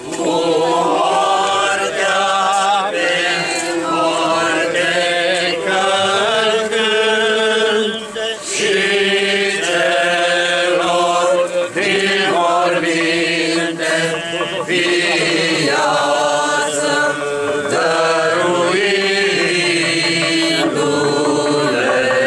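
Orthodox Easter (Resurrection service) church chant sung by a group of voices, moving phrase by phrase on long held notes with only brief breaks.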